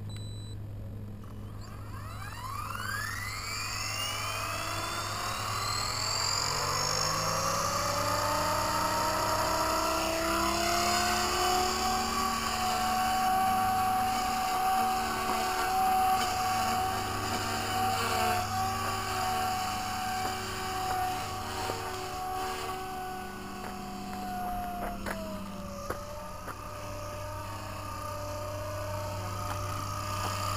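Blade 180CFX Trio electric RC helicopter spooling up, its brushless motor and three-blade rotor whine rising in pitch over the first several seconds, then holding a steady pitch in flight. About 25 seconds in the pitch drops and stays lower, a sign of the battery giving out; the pilot afterwards says it was dead.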